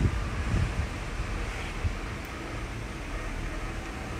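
Steady background noise like a fan's hum, with no distinct event standing out.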